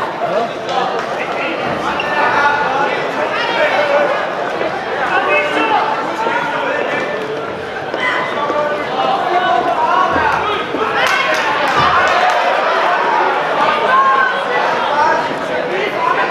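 Spectators in a large hall shouting and calling out during a boxing bout, many voices overlapping, with a couple of dull thumps about two-thirds of the way through.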